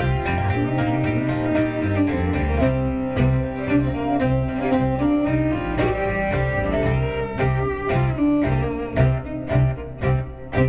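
Acoustic folk band playing an instrumental break in a traditional ballad: plucked strings keep a steady rhythm over bass notes while a held melody line runs above them.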